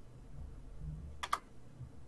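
Two quick faint clicks on a computer, a little over a second in, over a low steady hum from a call microphone.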